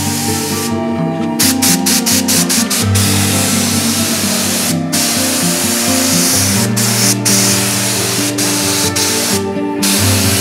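Gravity-feed air spray gun spraying epoxy primer: a loud steady hiss that stops and starts several times in short breaks as the trigger is let off and pulled again.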